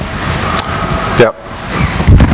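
Microphone handling noise: rustling and a knock as the microphone is moved between presenters, with low talk behind it. The sound drops away abruptly about a second and a half in.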